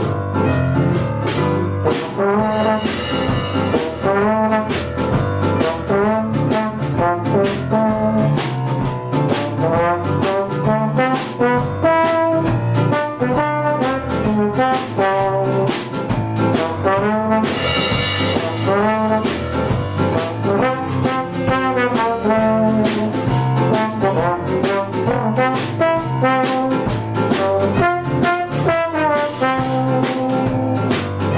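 Small jazz combo: a trombone plays the lead line over an electric keyboard in a piano voice and a drum kit. A cymbal crash comes a little past halfway.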